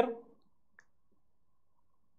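Near silence in a pause of a man's speech, with one faint click a little under a second in.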